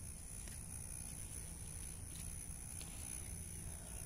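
Quiet outdoor background: a steady low rumble and a thin, steady high-pitched tone, with a few faint ticks.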